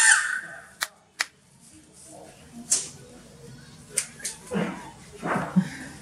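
Background noise from a faulty DC motor being tested: several sharp clicks and knocks over a faint low hum. Stifled laughter comes in near the end.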